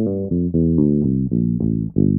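Electric bass guitar playing a G Dorian scale run back down, one clean note after another at about five notes a second.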